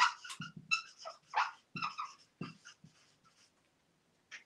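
Dry-erase marker squeaking on a whiteboard in quick short strokes as a word is written, with soft knocks of the marker against the board; the strokes thin out about three seconds in.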